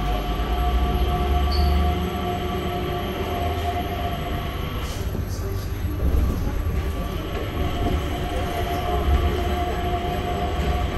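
Changi Airport Skytrain, a Mitsubishi Crystal Mover automated people mover, running along its guideway, heard from inside the passenger car: a steady low rumble with a constant whine over it.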